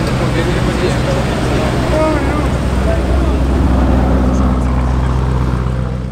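Lamborghini Urus twin-turbo V8 running at low revs with a steady low rumble as the SUV moves off slowly, growing a little louder near the end. A crowd of people chatters throughout.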